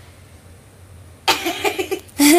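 A low steady hum, then a person laughing hard in quick pulses from about two-thirds of the way in.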